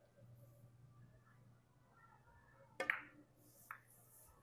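A carom billiard shot: the cue strikes the cue ball with one sharp click almost three seconds in, followed under a second later by a softer click of the balls knocking together.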